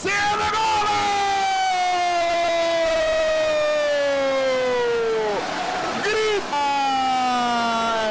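A sports commentator's drawn-out goal shout: one long held cry of about five seconds, slowly falling in pitch, then after a brief break a short call and a second long held cry.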